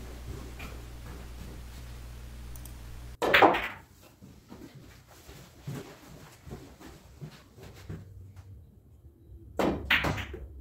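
Pool shots on a billiard table: a loud knock of cue and balls striking about three seconds in and another near the end, each ringing briefly, with faint clicks of balls knocking in between.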